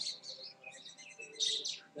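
Small birds chirping: a run of short, high chirps, loudest about one and a half seconds in.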